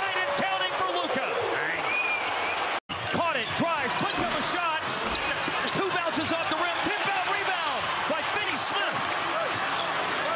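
Live basketball game sound on a hardwood arena court: sneakers squeaking and the ball bouncing over a steady crowd din. The sound drops out for an instant about three seconds in, where the footage cuts to another play.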